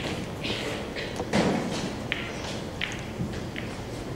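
A few soft taps and knocks in a large hall, with one heavier thud about a second and a half in.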